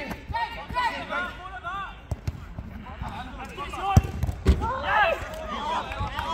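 Players shouting across a small-sided football pitch, with a few sharp thuds of a football being kicked, the loudest about four seconds in.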